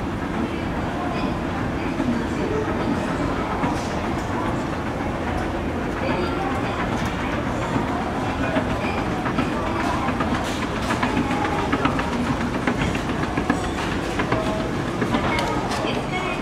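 Hitachi escalator running upward: a steady mechanical rumble from the moving steps and drive, with light clicking and rattling that grows busier in the second half.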